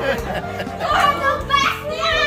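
Excited voices of children and adults calling out together over background music.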